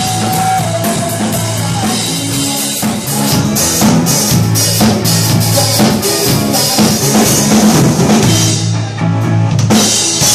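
A band playing: drum kit with bass drum and snare hits, over an electric bass guitar (a G&L L-1000) walking a moving line of low notes.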